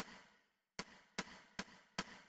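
Count-in clicks for a backing track at 150 beats a minute: a sharp click at the start, then after a gap, clicks about every 0.4 s from under a second in, each dying away quickly.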